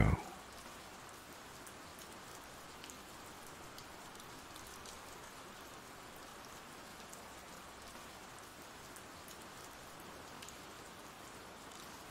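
Steady, soft rain from an ambient rain sound effect, an even patter with faint scattered drop ticks.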